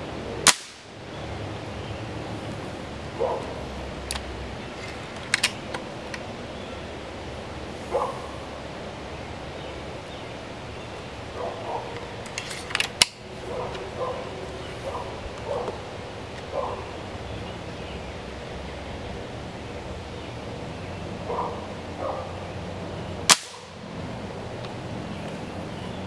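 Diana/Mauser K98 .22 spring-piston air rifle fired three times: a sharp crack about half a second in, a close double crack near the middle, and another crack near the end. Lighter clicks in between come from the underlever cocking and the rifle being loaded.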